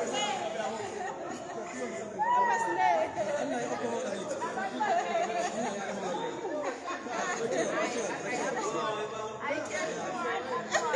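Several people talking over one another, with one voice calling out loudly about two seconds in.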